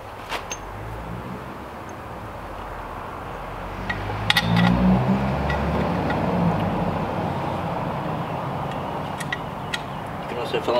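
A motor vehicle passing by: its engine sound builds over a few seconds, is loudest around the middle and then fades. A few light metallic clinks from scooter parts being handled and fitted.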